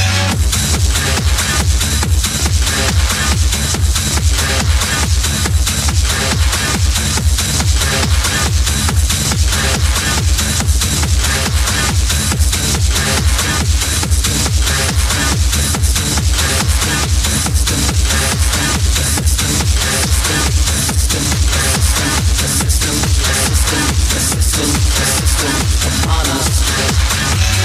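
Techno DJ mix: a steady, heavy kick drum with driving hi-hats and percussion, the kick coming in right at the start after a more melodic passage.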